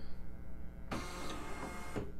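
The embroidery unit of a Husqvarna Viking Designer Jade 35 sewing and embroidery machine whirring as its motors move the hoop into position after the baste function is switched on, starting with a click about a second in.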